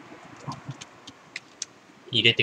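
A few scattered keystrokes on a computer keyboard, light separate clicks.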